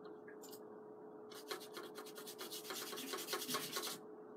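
A paintbrush scrubbed rapidly back and forth over textured papyrus paper: a scratchy rubbing made of many quick strokes a second. It starts about a second in and grows louder toward the end.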